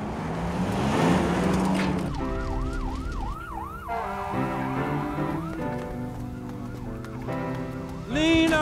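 A rising rushing noise as a pickup truck speeds over dirt, then from about two seconds in an emergency vehicle's siren on a rapid yelp, its pitch swooping up and down more than twice a second until near the end.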